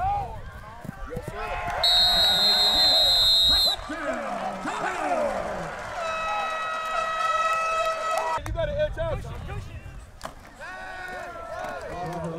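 A referee's whistle blown in one long blast about two seconds in, over shouting voices; a few seconds later a lower steady horn-like tone holds for about two seconds.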